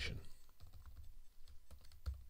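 Typing on a computer keyboard: a quick, irregular run of keystrokes as a line of text is entered.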